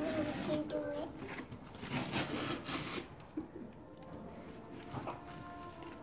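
Tape being picked at and peeled off a cardboard box, with a soft scratchy rasp about two seconds in and light rubbing on the cardboard.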